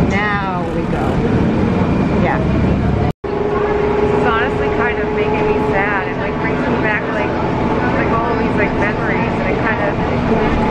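A Disney resort bus's engine and road noise, heard from inside the cabin, with indistinct passenger voices over it. The sound cuts out briefly about three seconds in, and after that a steady hum is held for a few seconds.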